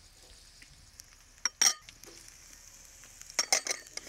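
Diced onion and sliced peppers sizzling faintly in hot olive oil in a steel paella pan, with one sharp clink about a second and a half in and a few quick knocks near the end.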